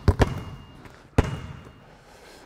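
Basketball bouncing on the hardwood court of an empty arena, each bounce echoing in the hall: two bounces close together at the start, then one more about a second later.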